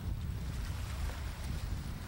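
Wind buffeting an open-air camcorder microphone by open water: an uneven, gusty low rumble with a faint hiss above it.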